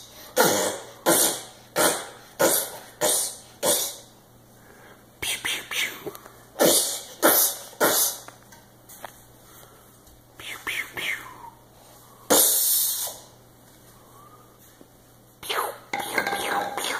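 A young child's voice making a string of short, breathy vocal bursts. Six come evenly spaced over the first four seconds, then scattered ones follow, with a longer burst about twelve seconds in.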